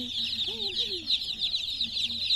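A crowd of domestic chicken chicks peeping without pause, many short, high, falling chirps overlapping into one continuous chatter.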